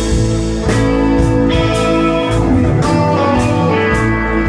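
Live rock band playing an instrumental passage between vocal lines: electric guitars over organ and keyboards, bass and drums, with a regular drum beat.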